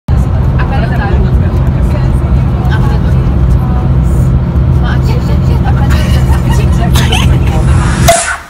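Steady low rumble of a coach's engine and road noise heard from inside the passenger cabin, with girls talking over it.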